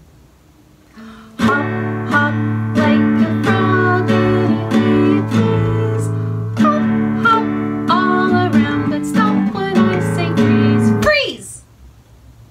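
A woman sings a children's action song while strumming a nylon-string classical guitar. The guitar and voice come in about a second and a half in and stop abruptly about eleven seconds in on a falling vocal swoop, the song's 'freeze' stop.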